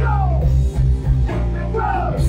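Live rock band playing loud, with electric guitar, drums and a man singing; his voice slides down in pitch near the start and again near the end.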